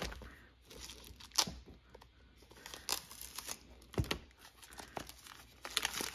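Plastic shrink-wrap being torn open and crinkled off a pack of card bases and envelopes, in irregular crackles with a few sharper snaps.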